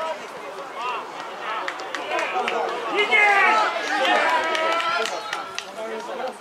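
Several men shouting and calling at once at a football match, their voices overlapping and growing loudest in the middle as an attack develops.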